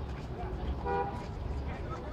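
A short vehicle horn toot about a second in, over outdoor noise of low rumble and distant voices.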